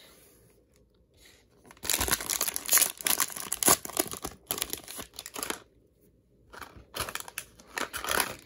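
Plastic wrapper of a Donruss Baseball fat pack of trading cards being torn open and crinkled. Crackling and tearing in quick bursts start about two seconds in, with a short pause before the end.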